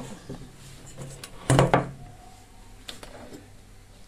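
Handling noise from multimeter test leads and wiring being moved about on a workbench: a few light clicks and one louder knock about a second and a half in.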